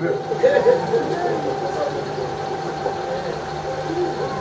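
A steady electrical or mechanical hum with a constant high tone, under faint murmuring voices that fade after the first second or so.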